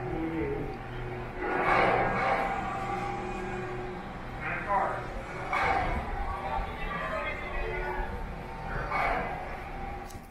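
Indistinct speech throughout, with a low steady hum underneath.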